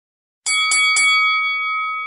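Boxing ring bell struck three times in quick succession, ding-ding-ding, its ringing tone then fading away.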